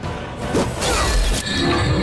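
Dramatic film score with a sound effect for a magic blast: a sudden burst of noise about half a second in that lasts about a second, then sustained musical tones.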